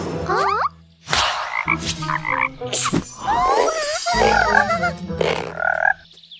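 Cartoon sound effects: a quick rising glide, a few sharp hits, then a run of wobbling, croak-like cries over a steady low tone.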